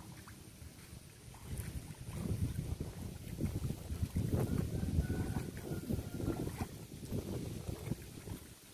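Wind buffeting the microphone in gusts: an irregular low rumble that swells about a second and a half in and eases near the end.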